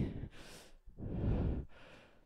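A woman exhaling heavily close to a headset microphone: a short breath, then a longer, louder sigh about a second in, as she catches her breath after a workout.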